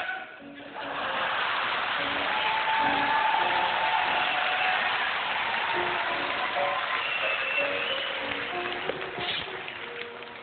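Audience applause in a large hall, rising about a second in and dying down near the end, over faint background music.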